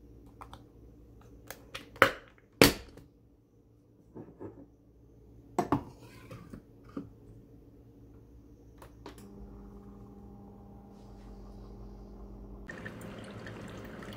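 Single-serve coffee brewer being loaded and started: sharp plastic clicks and clunks as a K-cup pod goes in and the lid is shut, then button presses. About nine seconds in the brewer's pump starts a steady hum, and near the end hot coffee begins streaming into the mug.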